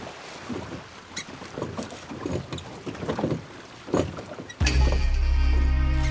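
Irregular splashing and knocking of oars working in water. About four and a half seconds in, loud music cuts in suddenly with a deep, held chord.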